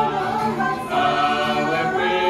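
Mixed choir of men and women singing a hymn together, held notes over acoustic guitar accompaniment, with a new phrase starting about a second in.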